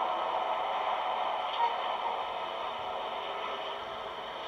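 Steady background hiss, with one faint short tick about a second and a half in.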